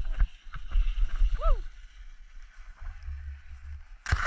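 Low rumble and wind on the camera microphone while riding a chairlift, with scattered light knocks and one short squeak that rises then falls about a second and a half in.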